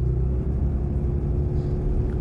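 Steady low rumble of a truck running, heard from inside the cab, with a faint steady hum above it.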